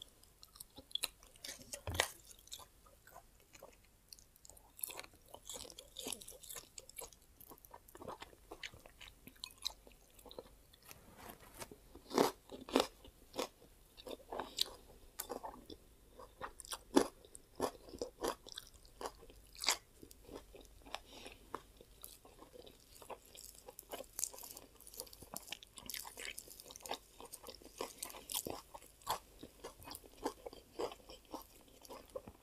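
A person chewing and biting grilled pork and fresh greens: irregular crunches and mouth clicks, with a few louder bites spread through.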